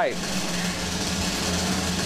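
A steady drum roll, building suspense, with a low steady hum beneath it.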